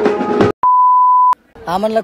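Banjo party band music with drum beats cuts off about half a second in. A single steady electronic beep follows, lasting under a second, and then a man starts speaking.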